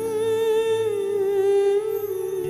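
A woman's voice humming one long held note into a microphone, with a light vibrato, stepping slightly lower about a second in.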